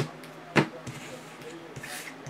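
Two sharp clacks of hard plastic trading-card holders being handled and set down on a table, about half a second apart, followed by faint small ticks.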